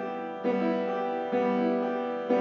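Grand piano played slowly: a full chord is struck about once a second, and each rings on and fades before the next.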